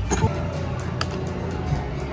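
Eureka Blast video slot machine playing its game music and reel-spin sounds over a steady casino background hum, with a sharp click about a second in.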